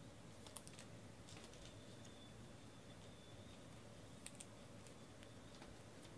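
Near silence, with a few faint, light clicks in two short clusters: one about half a second to under two seconds in, another about four seconds in.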